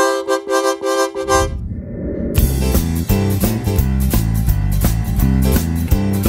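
Music: a short repeated chord figure pulses for about a second and a half, then a full band with bass and a steady drum beat comes in a little over two seconds in.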